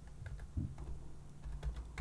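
Faint computer keyboard typing, a few light keystrokes.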